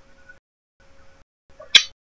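Phone-in call audio breaking up: short bursts of faint line noise carrying a steady hum, cut by gaps of dead silence, with one sharp click near the end as the line drops.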